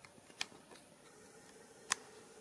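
A few light, sharp clicks over quiet room tone, the two clearest about a second and a half apart.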